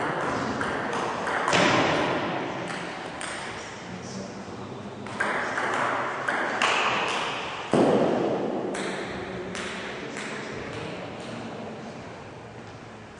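Table tennis rally: the celluloid ball clicks off the bats and the table again and again at an uneven pace. Each hit rings on in a large, echoing hall. The hits thin out and the sound fades near the end.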